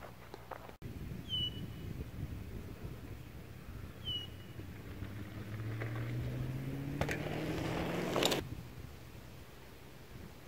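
A bird chirps twice, in short falling notes. Then a faint hum rises slowly in pitch for about four seconds and stops suddenly near the end, with a couple of sharp clicks just before it stops.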